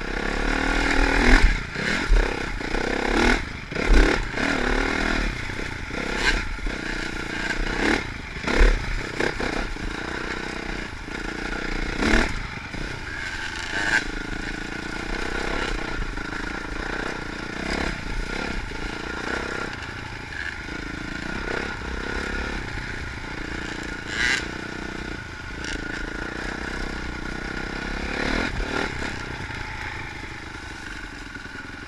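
Dirt bike engine running under way, its pitch rising and falling with the throttle, with frequent clattering knocks as the bike rides over rough trail ground. The knocks are thickest in the first half.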